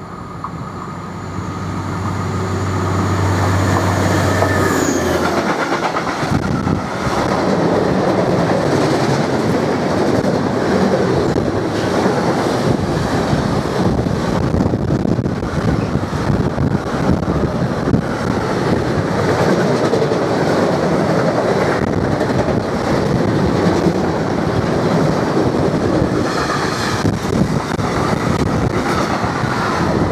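Vossloh DE18 diesel-electric locomotive approaching with a steady low engine hum that grows louder over the first few seconds. It is followed by a long freight train of double-deck car-carrier wagons rolling past close by, a loud, steady rumble of wheels on the rails.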